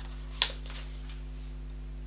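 A single short click of card packaging being opened by hand about half a second in, over a steady low electrical hum.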